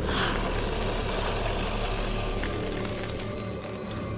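Tense film score: a low, steady drone, with a short rushing hit at the very start.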